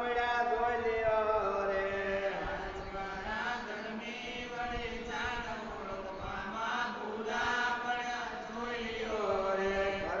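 Devotional chanting: voices holding long melodic notes that glide up and down, with a steady low hum underneath.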